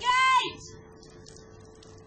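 A loud, high-pitched drawn-out vocal call, a person shouting out, that ends about half a second in, leaving a faint steady hum.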